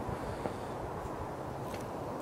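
Steady low background noise with no distinct mechanical event.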